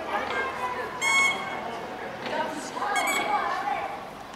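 A bicycle bulb horn honks loudly for a moment about a second in and again briefly near three seconds, over children's and adults' chatter.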